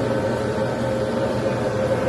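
Steady machine hum: a motor running at constant speed, holding several fixed tones with no change in level.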